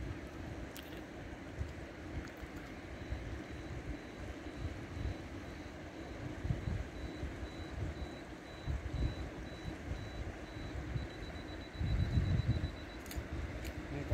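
Flowing river water with irregular low rumbles of wind buffeting the microphone, heaviest near the end. A faint, thin high-pitched tone pulses through the middle.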